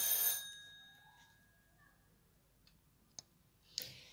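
A single bell-like chime right at the start, its several high tones fading over about a second and a half. A faint click follows about three seconds in.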